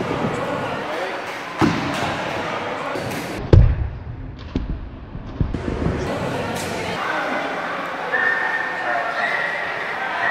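A 5 lb hex dumbbell dropped onto a smartphone lying on a rubber gym mat, landing with a single heavy thud about three and a half seconds in, after a lighter knock.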